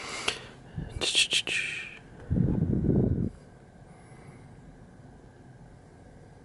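Hands handling a small cardboard product box: a few light clicks and a papery rustle about a second in, then a duller, muffled rubbing noise for about a second, followed by quiet room tone.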